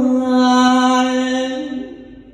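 Male likay singer holding one long sung note, steady in pitch, amplified through a handheld microphone; it fades out near the end.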